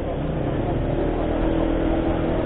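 Motor scooter running at a steady cruising speed, its engine mixed with road and wind noise.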